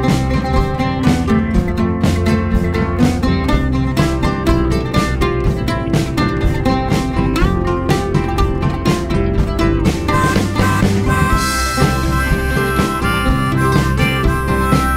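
Instrumental break of a folk-rock song: oud and guitar plucking a busy melody over a steady drum beat. A harmonica comes in with long held notes in the last few seconds.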